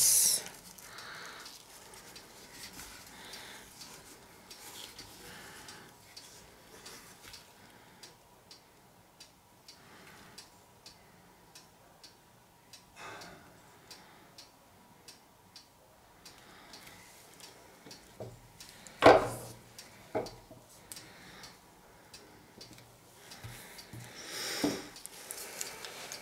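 Quiet handling of a small stretched canvas covered in wet acrylic paint: scattered light ticks and rubs, then a sharp knock about 19 seconds in and a smaller one a second later as the canvas is set down on the table.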